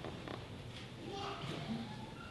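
Faint voices in a quiet, echoing church, with a few small knocks and shuffles.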